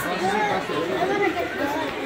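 Indistinct background chatter of people talking, with no clear words.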